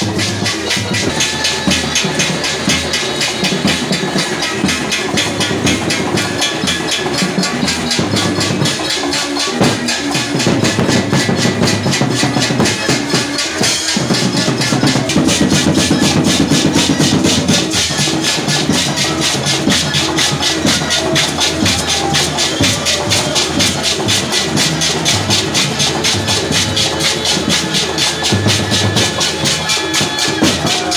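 Loud live church praise music with a fast, steady beat, with the robed choir clapping along.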